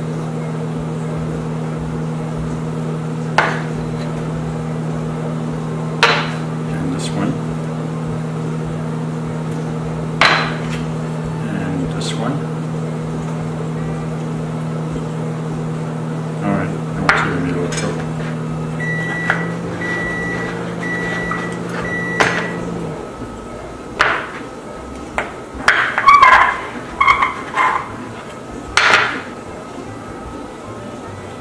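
Ceramic ramekins knocking and clinking on a wooden cutting board as baked puddings are turned out of them, over a steady kitchen-appliance hum. Late on, the hum carries about four short electronic beeps and stops a second or so after them; the knocks come thicker after that.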